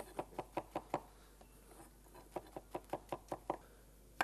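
Chef's knife chopping mushroom stems on a wooden cutting board: quick, even knocks of the blade on the board, about five a second. The chopping stops for about a second in the middle, then resumes.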